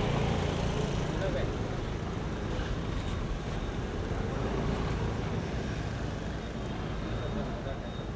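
Cars driving slowly past at close range, a steady engine and tyre rumble that slowly fades, with voices of people standing around the street in the background.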